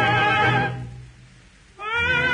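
An operatic voice on an old 78 rpm duet recording holds a note with wide vibrato and dies away less than a second in. A brief pause follows, then the music comes back in near the end with a note that slides upward.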